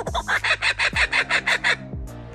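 Laughing kookaburra giving its laughing territorial call: a rapid run of loud, harsh repeated notes, about eight a second. A steady low beat sounds underneath.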